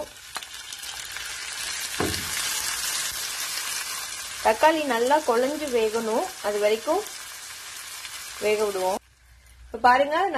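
Sliced shallots, garlic and chopped tomatoes sizzling in hot oil in a nonstick frying pan. The sizzle grows louder about two seconds in, with a soft thump, and cuts off suddenly near the end.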